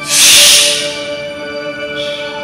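Background music of steady sustained tones. Just after the start, a loud hissing whoosh swells and fades away within about a second.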